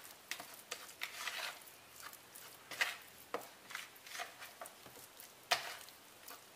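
A hand squishing and kneading sticky minced Spanish mackerel paste in a plastic bowl, working in the seasoning: faint, irregular soft squelches, with a sharper one near the end.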